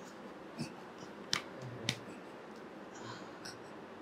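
Quiet room tone with a few faint, sharp clicks: two stand out, a little over a second in and about half a second apart. A soft hiss comes near the end.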